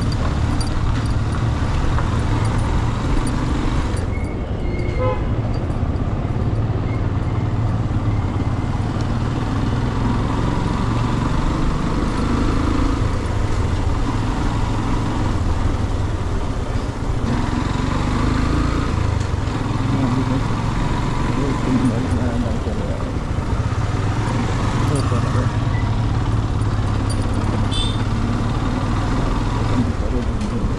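Motorcycle riding at low speed, its engine running steadily under heavy wind rumble on the bike-mounted microphone, with street traffic around.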